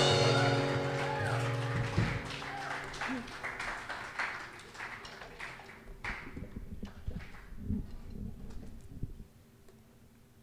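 A live band's final strummed acoustic-guitar chord ringing out and fading away over the first few seconds, followed by scattered light knocks and thumps as the instruments are handled. The sound cuts off suddenly to near silence shortly before the end.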